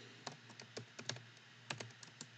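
Computer keyboard being typed on: about a dozen quick, uneven key clicks as a short word is entered.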